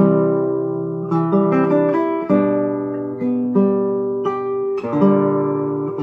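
Solo classical nylon-string guitar played fingerstyle: a slow, calm piece in C that starts with a struck chord, then moves on in single plucked notes and broken chords that ring over one another.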